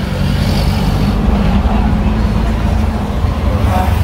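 Car engine idling steadily, a low even hum heard from inside the cabin.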